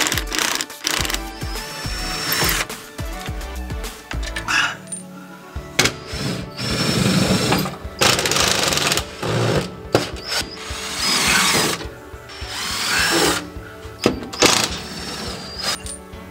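Cordless power driver running in short bursts, spinning up and down as it backs screws out of a metal strip on the hull, with background music over it.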